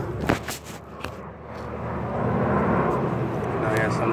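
Handling noise from a phone being swung around: a few knocks and rubs in the first second, then a steady rushing background that grows louder, with a murmured voice near the end.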